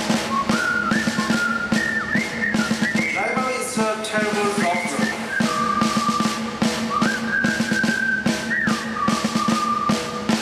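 Music: a high, whistle-like lead melody of held notes and sliding pitches over a steady drum beat and a low held note.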